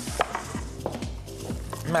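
Knife chopping apple on a wooden cutting board: a handful of separate knocks of the blade on the board.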